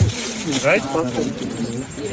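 Speech: a man's voice asking "Right?" in an unhurried storytelling conversation.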